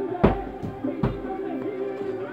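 Music playing, with thuds of blows landing on a hanging heavy punching bag: the loudest a quarter of a second in and a weaker one about a second in.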